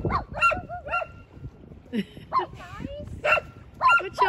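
Repeated short honking calls from birds. Several come in quick succession at the start, with wavering calls between, and more honks near the end.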